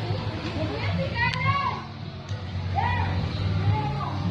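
Children's high-pitched shouts, two short calls, over background music with a steady bass line.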